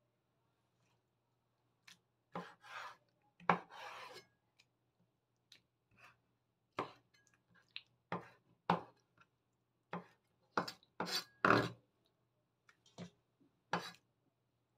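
Kitchen knife chopping soaked wood ear mushrooms on a wooden cutting board: single irregular chops with pauses between them, more than a dozen in all, coming closer together in the second half.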